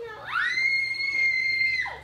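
A child's long, high-pitched scream that rises quickly, holds one note for about a second and a half, then drops off sharply.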